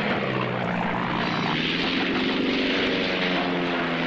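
Propeller aircraft engine giving a steady, low drone.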